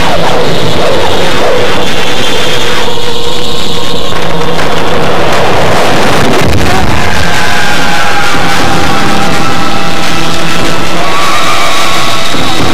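Loud film-score music with held tones over a dense, noisy electronic texture, and a falling sweep in pitch about seven seconds in.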